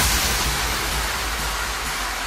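An electronic dance music breakdown: the drums and melody drop out, leaving a white-noise wash over a sustained low bass note that slowly eases off.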